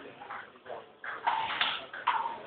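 Table tennis rally: the celluloid ball clicking off the paddles and bouncing on the table, a sharp tap about every half second, echoing in a hall.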